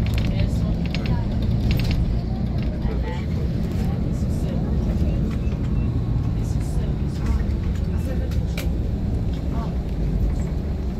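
Steady low engine and road rumble heard from inside a moving road vehicle, with scattered light clicks and rattles.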